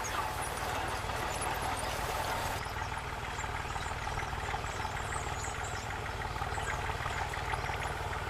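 Farm tractor engine running steadily, a low, even drone.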